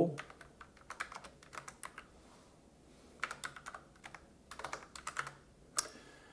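Typing on a computer keyboard: quick irregular runs of key clicks with short pauses between them, and one sharper keystroke near the end.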